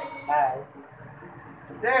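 Speech only: a short spoken syllable, then a brief laugh near the end over low background noise.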